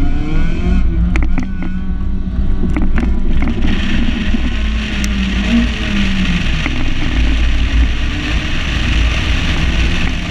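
Honda CRX engine under hard acceleration on an autocross course, its revs climbing, dropping back and climbing again, with heavy wind buffeting on an outside-mounted microphone. There are a few sharp clicks in the first seconds, and a steadier rushing hiss builds from about four seconds in as speed rises.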